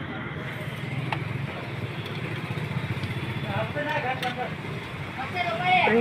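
Steady low rumbling background noise, with indistinct voices talking in the second half.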